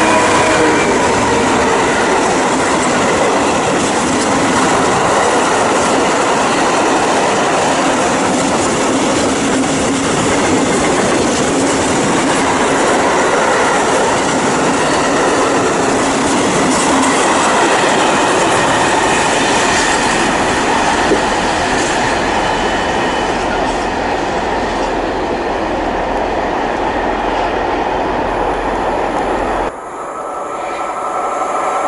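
Class 66 diesel locomotive passing at the head of a long freight train of covered wagons. Its engine is heard at first, then a steady rumble and clatter of wagon wheels on the rails.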